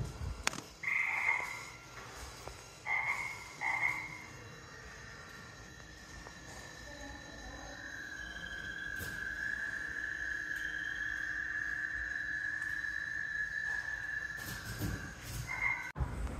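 Frog calls: three short croaking chirps early on, then one long, steady, high trill lasting about seven seconds.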